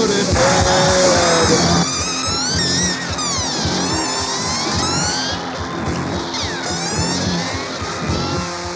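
Noise-punk band playing an instrumental break: a steady drumbeat and bass under high, fast sweeping tones that glide up and down through the middle of the passage.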